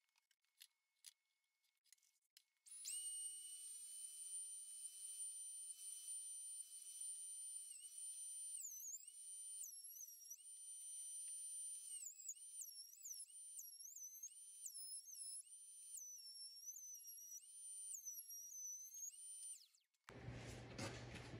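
Faint high whine of a benchtop thickness planer's motor. It starts about three seconds in and cuts off just before the end. After a steady first stretch, its pitch dips and recovers again and again as boards feed through and load the motor.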